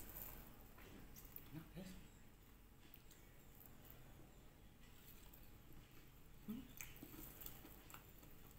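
Near silence, with faint chewing and mouth sounds and a few soft clicks of someone eating with her fingers.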